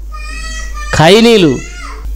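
A thin, high-pitched call held steady for just under a second, then a man's short spoken syllable, then a fainter call falling in pitch near the end.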